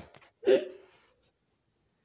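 Brief rustle of a hand handling the phone, then about half a second in a single short, loud vocal sound from the person filming.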